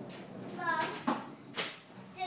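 A young child's brief wordless vocal sound, followed by a light knock and a short, sharp noise.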